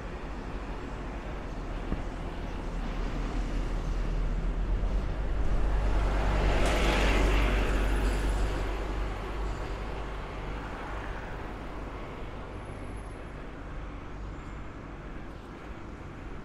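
A double-decker bus passing close by: engine and tyre noise builds to a peak about seven seconds in, then fades as the bus pulls away, over steady street traffic noise.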